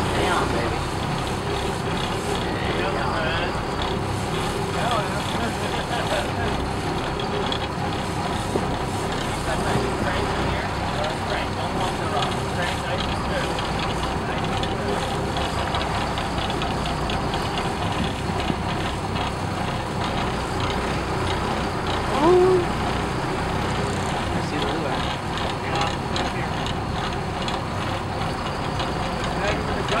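Steady drone of a sport-fishing boat's engine running at low speed.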